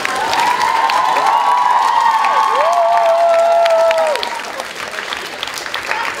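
Comedy-club audience applauding and cheering a punchline, with several high, held cries over the clapping. After about four seconds the cries stop and the applause thins out.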